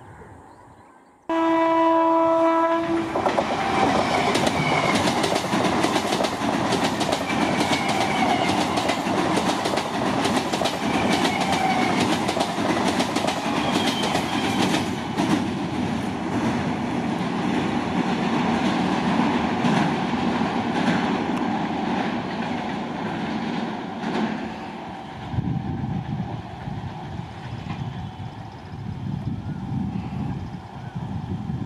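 Electric multiple-unit train sounding one horn blast of about two seconds, starting a second or so in. It then runs past at speed over a steel truss bridge, with a dense rumble and rapid clicks of wheels over rail joints. Near the end the sound turns to a lower rumble.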